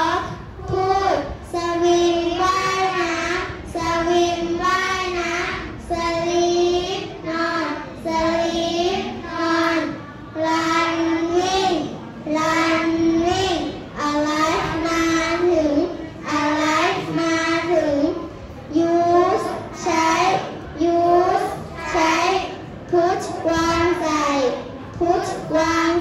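A class of children reciting vocabulary aloud in unison, in a sing-song chant: English words each said twice with their Thai translations. Phrases come about once a second with short pauses between them.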